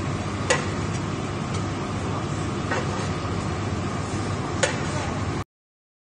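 Steady background noise with a few faint, sharp ticks, cut off abruptly shortly before the end.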